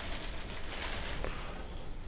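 Quiet handling noise of hands moving over the tabletop and the polyester fiberfill stuffing, with a faint tap a little over a second in.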